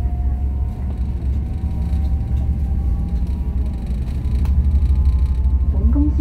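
A passenger ferry's engines running, heard on board as a steady low rumble that grows louder about four and a half seconds in.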